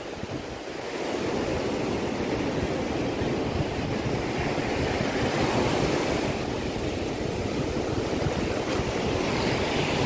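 Ocean surf breaking and washing up a sandy beach. It is a steady rush that builds over the first second and swells slightly about halfway through.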